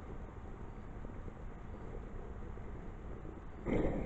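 A steady low background hiss, then near the end a sudden loud whoosh as a full glass of water hits the very hot burning candle wax inside a jack-o'-lantern. The water flashes to steam and throws the wax up into a fireball.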